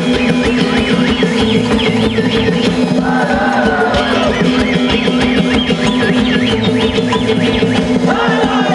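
A live band and a large choir perform a folk-rock song: loud, with drums, a steady low drone and a high wavering line over the top.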